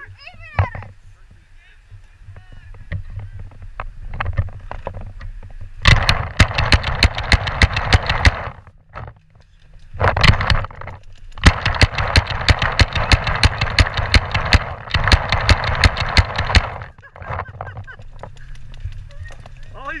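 Paintball fire: rapid strings of sharp pops, about six or seven a second, in two long bursts, one about six seconds in lasting two to three seconds and a longer one from about ten to seventeen seconds, with balls striking the bunker in front.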